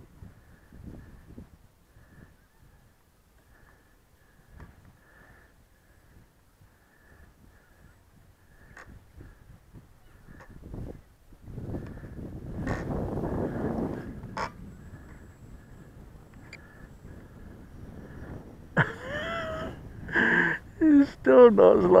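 Gusty wind buffeting the microphone in uneven bursts, loudest a little past the middle. Near the end, several short, loud pitched calls.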